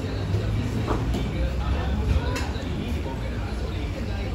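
Busy eatery ambience: indistinct voices over a steady low rumble, with a few light clicks.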